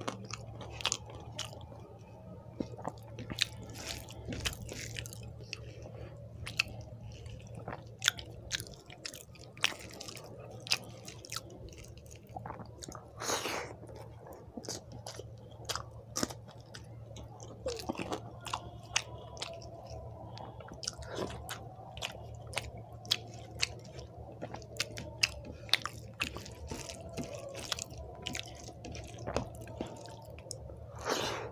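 Close-miked chewing of rice and fried egg eaten by hand, with frequent sharp, irregular mouth clicks and smacks. Fingers mix rice on the plate between mouthfuls, and a steady low hum runs underneath.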